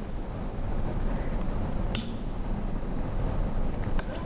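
Steady low hum of the room and sound system, with a sharp click about halfway through and another near the end: laptop keys being pressed.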